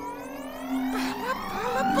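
Cartoon sound effect: a long pitch glide rising steadily throughout, marking a character's leap upward, over background music.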